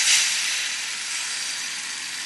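Beaten eggs sizzling as they hit a hot nonstick frying pan: a loud hiss, strongest at first and slowly dying down.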